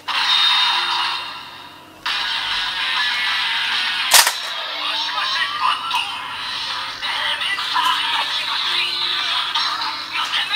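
A DX Seiken Swordriver toy transformation belt plays its electronic transformation music and sound effects through its small, tinny speaker as a Wonder Ride Book is fitted and the sword is drawn. It goes quiet for a moment near two seconds, then carries on. A sharp click comes about four seconds in.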